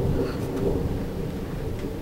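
Low rolling rumble of thunder from a severe thunderstorm, slowly fading away.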